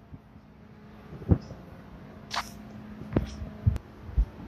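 A few soft, irregular thumps, the footsteps of someone walking on a concrete floor, with a brief hiss about halfway through over a faint steady hum.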